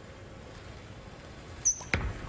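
Quiet bowling-centre room tone. Near the end comes a brief high squeak, then a single sharp thud as the bowling ball is laid down onto the wooden lane at release.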